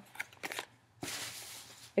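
Boxed pair of roller skate toe stops handled in the hands, the cardboard-and-plastic packaging giving a few light crackles, then a rustling scrape lasting about a second.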